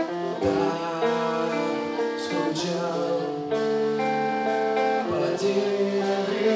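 A live band playing: electric guitars and a bass guitar hold chords that change every second or so.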